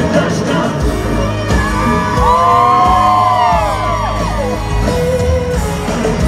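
A live country-rock band plays loudly, heard through a phone's microphone from the crowd. About two seconds in, many audience voices whoop and yell over the music for a couple of seconds.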